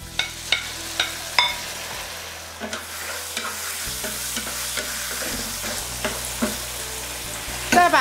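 Shelled shrimp scraped off a plate into hot oil in a wok and stir-fried with a wooden spatula, sizzling steadily. A few sharp knocks of the spatula against plate and wok come in the first second and a half.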